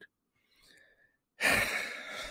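A man sighing: a faint breath in, then a loud breathy exhale about one and a half seconds in.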